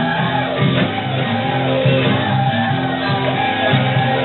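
Rock band playing live with drums, electric guitar, bass and keyboard, with singing and shouting over the band.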